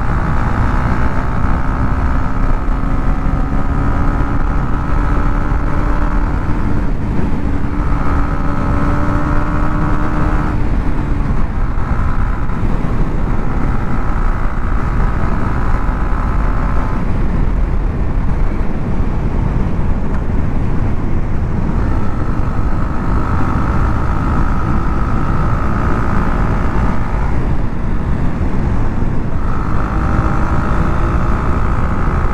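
Motorcycle being ridden at road speed, heard from a camera on the rider: loud wind rush on the microphone over a steady engine note that shifts in pitch several times.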